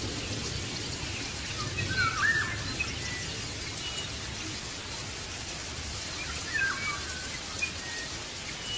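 Birds chirping over a steady background hiss, with short calls about two seconds in and again near seven seconds.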